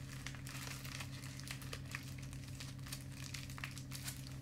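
Quiet room tone: a steady low electrical hum with faint, scattered crackling clicks.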